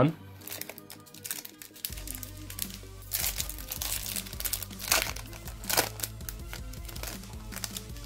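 Foil wrapper of a Pokémon Celebrations booster pack crinkling in quick, irregular crackles as it is torn open by hand and the cards are slid out, the loudest crackles in the middle.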